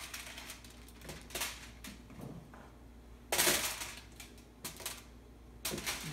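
Halved petite potatoes dropping off a wooden cutting board into a foil-lined roasting pan: scattered knocks and rustles of foil. The biggest clatter comes about three and a half seconds in.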